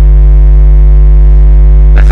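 Loud, steady electrical mains hum with a ladder of buzzing overtones, running unbroken in the sound feed.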